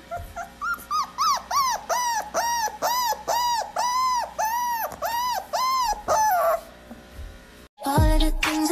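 Small puppy whining: a long run of short, high, rising-and-falling whimpers, about two or three a second, that stops about six and a half seconds in.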